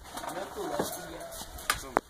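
Background chatter of several voices at a shared meal, with two sharp clicks near the end.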